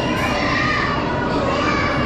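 Steady din of many children's voices chattering and calling in a large indoor hall.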